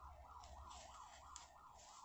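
Faint electronic siren yelping quickly up and down, about three sweeps a second, with light rustling of yarn being wound around cardboard.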